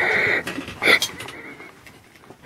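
A girl's drawn-out vocal cry that breaks off about half a second in, followed by a short yelp about a second in.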